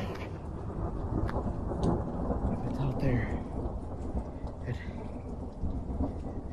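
Thunder rumbling over steady rain, with a few sharp crackles.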